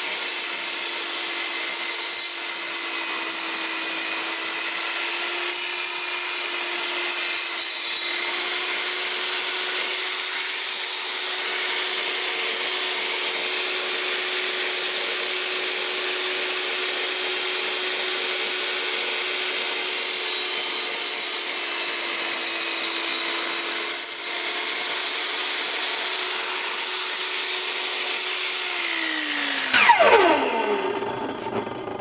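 Vevor 1800 W benchtop table saw running, its blade cutting slowly through a rotten chestnut log at the saw's maximum cutting depth; the motor's steady whine dips slightly under load. Near the end the saw is switched off and the whine falls away as the blade spins down.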